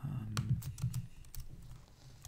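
Typing on a computer keyboard: a quick, irregular run of keystrokes.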